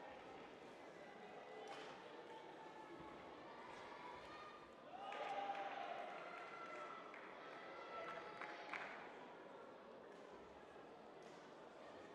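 Faint sports-hall ambience: a low murmur of distant voices, loudest about five to six seconds in, with a few soft knocks.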